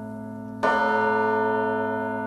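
A large bell struck once about half a second in, its many tones ringing on and slowly fading over the lingering hum of the toll before it. It is a slow bell toll laid over the film as soundtrack music.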